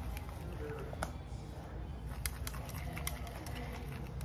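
Tint brush stirring and scraping hair colour in a plastic mixing bowl, with a few sharp clicks as it knocks against the bowl's side.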